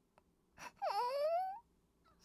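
A cartoon baby's short whining cry, about a second long, its pitch dipping and then sliding upward: the baby fussing because its diaper needs changing.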